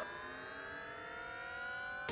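A single sustained synthesizer tone, rich in overtones, slowly rising in pitch: a riser in an electronic film score, building into the next music cue.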